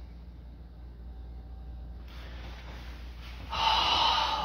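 Low steady room hum, then, about three and a half seconds in, a loud breathy snort of laughter from a person.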